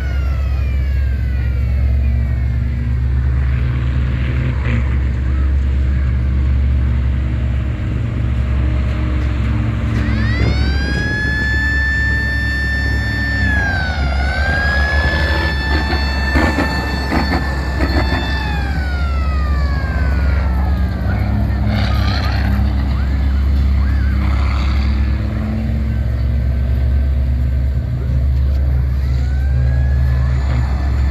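Six-wheeled ex-military monster truck driving past close by, its engine rumbling steadily under a high whine. The whine rises about ten seconds in, holds with a brief dip, then falls away and starts to rise again near the end.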